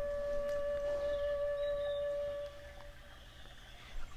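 A sustained singing-bowl tone rings steadily with faint higher overtones, then fades out about three seconds in.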